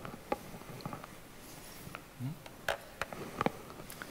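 Scattered light clicks and taps of instruments being handled over a faint room background, with a brief low hum from a voice about two seconds in.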